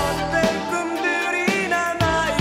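A 1992 Korean pop song played from a vinyl LP on a turntable: a male voice singing over a steady drum beat and sustained keyboard chords.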